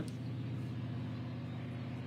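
Steady low background rumble with a faint hum, unchanging through the pause.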